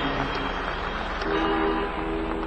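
Crowd noise in the arena, with a held electric guitar tone through the amplifier coming in about a second in and sustaining.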